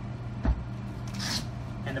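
A folded Mares Cruise Roller Bag being unrolled on a glass counter: a single thump about half a second in as the bag's wheeled base is set down, then a short rustle of its fabric just after a second in, over a steady low hum.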